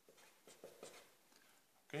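Marker pen drawing on paper: a few faint, short strokes as a line is drawn.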